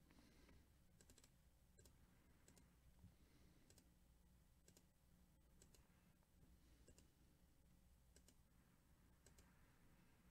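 Near silence with faint, scattered computer mouse clicks, a few seconds apart and at irregular intervals, as a web page's button is clicked over and over.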